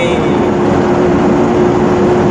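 Cargo truck's cab noise while driving on the highway: steady engine and road noise with a constant hum.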